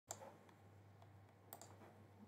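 Two faint computer mouse clicks about a second and a half apart, over a low steady hum.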